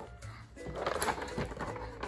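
Soft background music with steady held notes, joined about half a second in by the noisy handling of a cardboard display box as it is pulled open.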